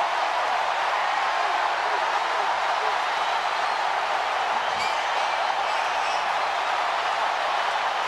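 Large stadium crowd cheering, a steady wall of noise with no let-up.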